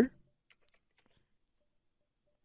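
A couple of faint computer keyboard keystrokes about half a second in, as a number is typed, otherwise near silence; a spoken word ends at the very start.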